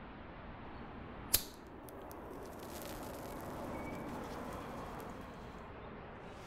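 One sharp, short click about one and a half seconds in, then a few fainter clicks, over a low steady hiss.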